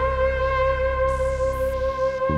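Ambient electronic music: a synthesizer lead holds one long, steady note over a sustained low bass drone.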